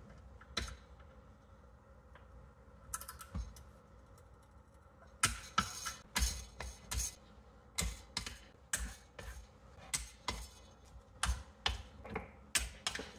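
Ratchet wrench clicking in short strokes on the bolts of a Briggs & Stratton engine as they are run down toward their 89 inch-pound torque spec. The clicks are sparse at first, then come steadily about twice a second from about five seconds in.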